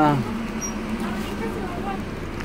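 Steady low hum inside a coach bus cabin, with faint voices of other passengers in the background; a spoken word trails off at the very start.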